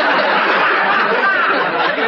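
Studio audience laughing loudly, easing off slightly near the end.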